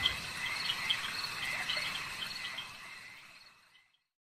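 Crickets chirping at night: a steady high trill with regular chirps. It fades out about three seconds in.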